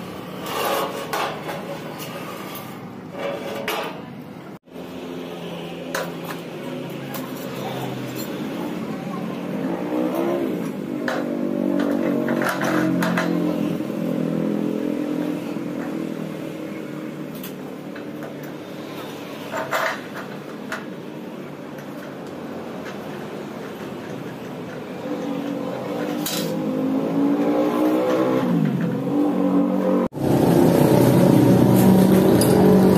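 Light metal clinks and scrapes of a steel hinge bracket and its bolt being handled and fitted on a steel door frame, a few sharp clicks scattered through. Under them runs the hum of a vehicle engine whose pitch rises and falls.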